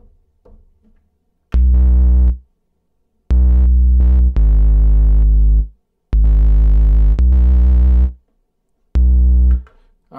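Omnisphere synth bass with a gritty tone played on its own, with no drums or sample: about six long, deep notes in four phrases with short silences between, starting about a second and a half in.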